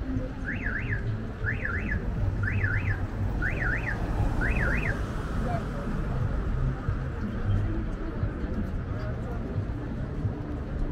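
Car alarm sounding a double rising-and-falling electronic whoop, five times at about one a second, stopping about five seconds in, over low street traffic rumble.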